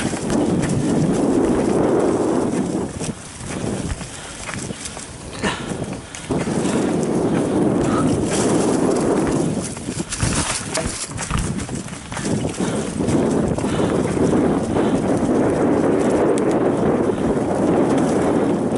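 Giant Trance mountain bike ridden fast over dirt singletrack strewn with dry fallen leaves: tyres rolling and crunching through the leaves, with knocks and rattles from the bike over bumps. The noise eases twice, around three to six seconds in and again around ten to twelve seconds in.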